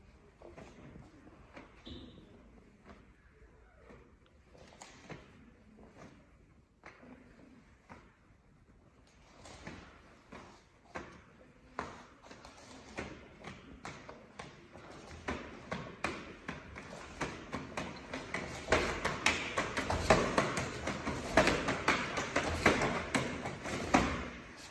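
Hands and forearms slapping and knocking together in a karate partner blocking drill, with the rustle of heavy cotton uniforms. The contacts start sparse and quiet, then come faster and louder over the second half.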